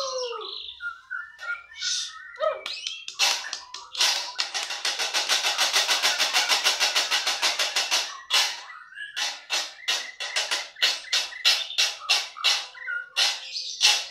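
White-rumped shamas (murai batu) singing at rival males in facing cages, a territorial challenge. Whistled, gliding phrases open, then a fast, even rattle of about nine notes a second lasts some four seconds, followed by a string of separate sharp notes.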